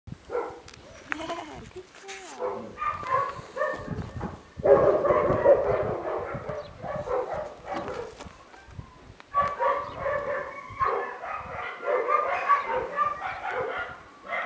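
Dogs barking and yipping in repeated short calls, mixed with people's voices; the loudest stretch comes about five seconds in.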